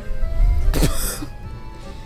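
A person briefly clearing her throat once, about a second in.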